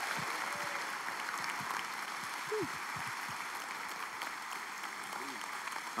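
A large audience applauding steadily, with a few scattered voices calling out over it.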